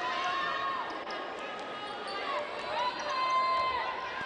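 A basketball being dribbled on a hardwood arena court, over the arena's general noise. Two long, high-pitched held sounds of about a second each come early and again near the end.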